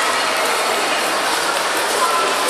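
Steady, loud hubbub of a busy indoor shopping mall: a constant hiss of noise with faint voices mixed in.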